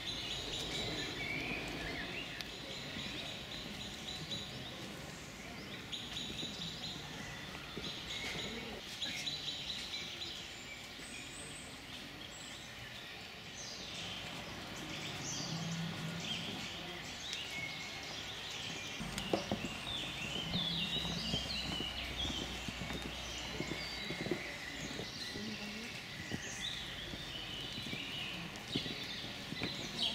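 Wild songbirds chirping and singing, many short high calls scattered throughout, over a steady outdoor background hiss, with a low rumble for a few seconds just past the middle.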